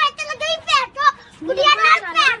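A very high-pitched voice talking, the lip-sync soundtrack's speech, with pitch rising and falling from syllable to syllable.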